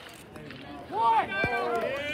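Several spectators shouting and cheering together after a hit, their voices rising loudly about a second in.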